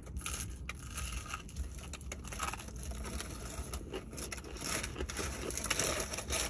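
Close-up crunching and chewing of a fried chicken leg's crispy breaded skin: an irregular run of crackly crunches.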